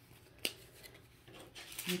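A single sharp tap or click about half a second in, then faint handling of paper card stock.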